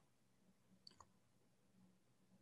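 Near silence: faint room tone with two tiny clicks just under a second in.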